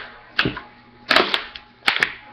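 A few sharp, short taps, about four in two seconds at uneven spacing.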